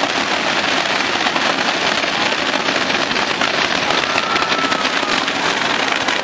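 Aerial fireworks crackling: a dense, continuous spray of many small pops and crackles from bursting stars, with no single big bang.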